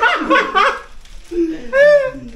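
Men laughing, in two bursts: one at the start and another near the end.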